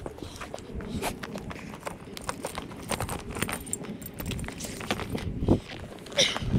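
Horse tack being handled as an English saddle is taken off: rustling of the saddle and pad with scattered light clicks and knocks of buckles and stirrup irons, and a few steps.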